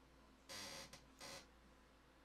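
Near silence: room tone, with two faint brief hisses, one about half a second in and one just after a second in.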